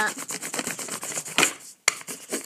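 Black crayon in a toy holder rubbed quickly back and forth across paper laid over a textured plastic design plate: a fast run of scratchy strokes, with one louder stroke near the end followed by a sharp click.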